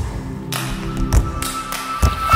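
Background music: held chords with a percussive hit roughly every half second.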